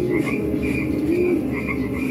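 A night-time ambience soundtrack of frogs croaking and insects chirping. Short high chirps repeat several times a second, and a couple of low rising-and-falling croaks sound through them.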